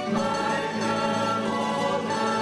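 A plucked-string ensemble of bandurrias and guitars playing held chords, with a choir singing along.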